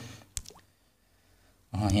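A pause in a man's narration holding a single short, sharp click about a third of a second in, then near silence until he speaks again near the end.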